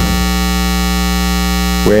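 Keyboard synthesizer pad holding one steady, unchanging chord, with a low electrical hum beneath it.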